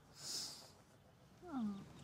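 Quiet, close breath sounds: a short breathy exhale about a quarter second in, then a brief falling hum from a voice near the end.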